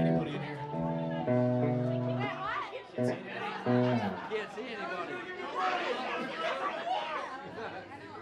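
Sustained keyboard chords, held and changed in steps for about four seconds, then stopping. After that comes overlapping audience chatter.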